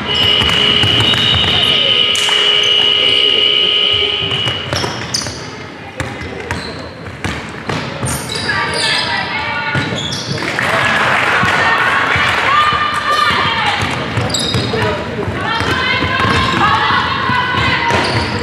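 A basketball dribbled and bouncing on a wooden sports-hall floor during play, echoing in the hall, with players and coaches calling out. A steady high-pitched tone sounds for about the first four seconds.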